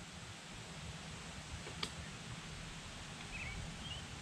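Quiet outdoor background noise with a low rumble, broken by a single small click a little before halfway and a faint short chirp a little past halfway.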